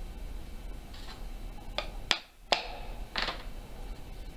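Rustling and handling of a stiff banjo skin as it is stretched and tacked onto the wooden rim, with a few sharp clicks about halfway through as tacks are pressed in.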